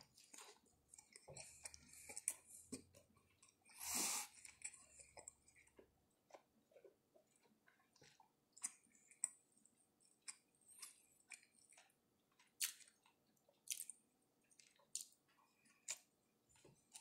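A person chewing a mouthful of cheeseburger: faint, irregular small clicks and crackles of the mouth working, with one louder noisy sound about four seconds in.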